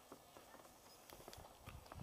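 Faint footsteps on a snow-covered driveway, soft steps that grow slightly louder near the end.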